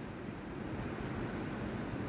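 Steady background noise in a pause between speech: room tone with a low rumble and hiss, no distinct event.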